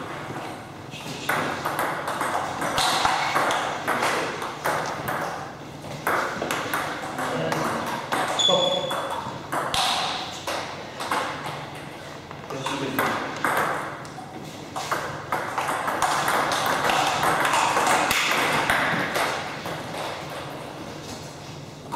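Table tennis balls clicking off rackets and table tops, in irregular runs of sharp strokes and bounces, with voices talking in the background.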